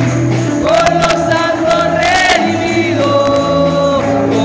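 Men singing a congregational gospel hymn into microphones over an amplified church band, with a moving bass line and tambourine-like jingling strikes.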